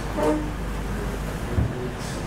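Steady low electrical hum, with a brief pitched sound just after the start and a single low thump about one and a half seconds in.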